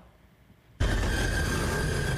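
Near silence for almost a second, then a film soundtrack cuts in abruptly: a loud, steady low rumble with a sustained high tone over it.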